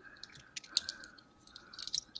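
Light, scattered clicks of small coins knocking together as they are handled in the hand, a few more of them near the end.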